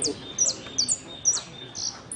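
Caged saffron finch (Argentine jilguero) singing its contest song: a quick run of about six high notes, each sliding sharply downward.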